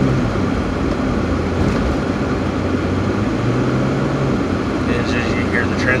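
Cabin noise of a Jeep being driven: a steady rumble of engine and road noise, with a low hum that fades in and out around the middle.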